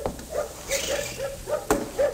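Dogs barking in a kennel, a radio sound effect: short barks repeating about three or four times a second, with a sharp thump near the end.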